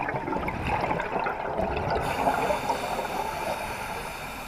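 Scuba diver exhaling through a regulator underwater: a long rush of crackling exhaust bubbles that eases off near the end.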